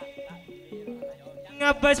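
Live traditional kencak horse-dance music: a quieter passage in which a low melody steps downward note by note, then drum strikes and a bright, loud melody instrument come back in together about a second and a half in, keeping a steady beat.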